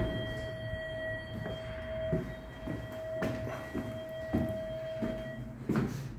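An apartment block's entry intercom giving a steady electronic buzz that cuts off about five and a half seconds in. A few soft thuds are scattered through it.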